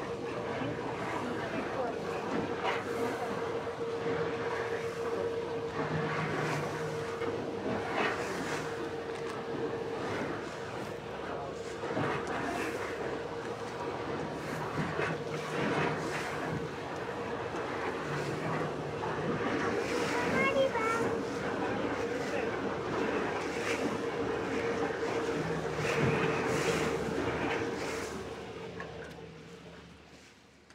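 Passenger boat under way on a lake: a steady engine hum under the rush of wind and water at the bow, fading out near the end.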